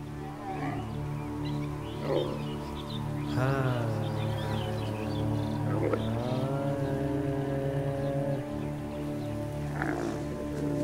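Dromedary camels calling: drawn-out low calls that bend in pitch, the longest held for about two seconds, over a steady musical score.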